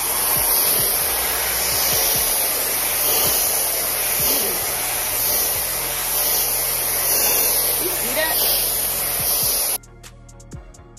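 TYMO AirHyperLite hair dryer blowing steadily as it is drawn through thick natural hair, a loud hissing rush of air that cuts off suddenly near the end.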